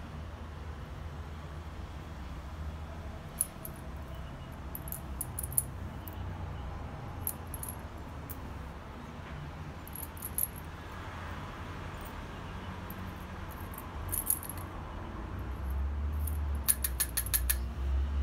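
Small bits of tool steel and saw-blade slivers clinking against each other and against a stainless steel tube as they are handled and packed into it: scattered light clicks, with a quick run of clicks near the end. A steady low hum runs underneath.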